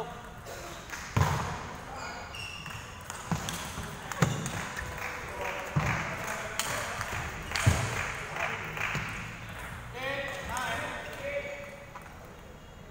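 Table tennis rally: the small plastic ball clicking sharply off the bats and table at uneven intervals over several seconds. Voices follow near the end.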